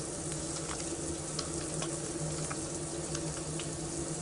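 Soapy hands rubbed together to work up a lather, a soft wet crackling with a few faint ticks over a steady low hum.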